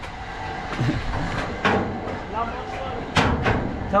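Metal clanking from an old amusement ride's steel cage gondola and frame: a sharp knock about one and a half seconds in and two more close together past three seconds, over a steady low rattle.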